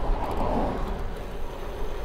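Wind rushing over the microphone of a cyclist riding at about 23 mph, a steady low rumble with road noise, and a car passing in the opposite direction within the first second.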